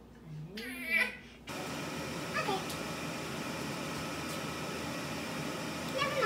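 A cat meowing, then from about a second and a half in a steady sizzle of turon frying in a pan of oil, with another short meow over the sizzle.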